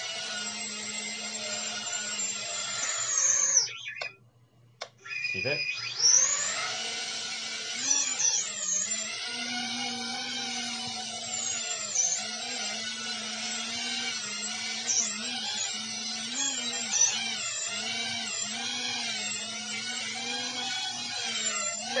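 Small FPV quadcopter's motors whining. About four seconds in they wind down and stop. A second or so later they spin up again with a rising whine and keep running, the pitch wavering up and down with the throttle as the quad lifts off and hovers.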